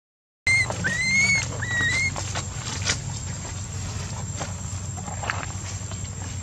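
Infant long-tailed macaque crying: three short, high-pitched calls, each rising in pitch, in the first two seconds. Then faint rustling on dry ground over a low steady hum.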